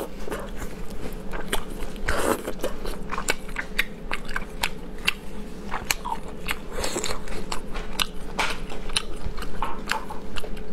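Close-miked eating of marinated shellfish: chewing and biting with many irregular sharp clicks and crunches of shell and flesh.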